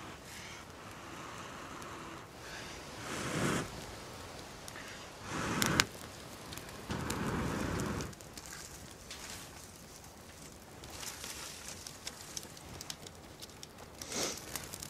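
A person blowing hard on a smouldering ember nested in a bundle of dried bracken to bring it to flame, with three strong breaths about two seconds apart, the last one longest. Faint crackling and rustling of the dry bracken between breaths as it catches.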